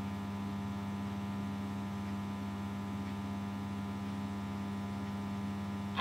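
Steady electrical mains hum, a low, even buzz with a ladder of overtones that does not change.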